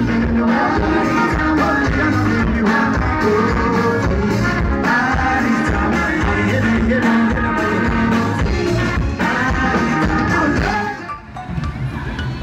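Live band playing dance music with a steady beat on drum kit and guitar, with singing. The music cuts off sharply near the end.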